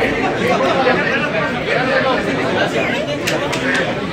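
Several men talking over one another in a crowded room: overlapping chatter.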